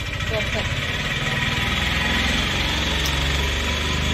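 Wind blowing across the microphone: a steady rushing noise with a low rumble underneath.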